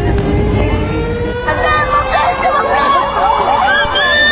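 A steady siren tone sounds throughout over street noise. Several people start shouting and calling out over it about a second and a half in.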